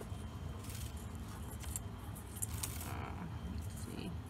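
Small Christmas ball ornaments and their wire being handled on a table, giving scattered light clinks and rattles over a steady low background hum.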